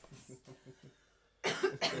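A woman coughs twice in quick succession, about one and a half seconds in.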